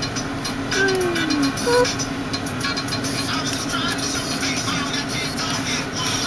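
A steady low hum inside the cabin of a car idling at a drive-up ATM, with a few short pitched sounds over it.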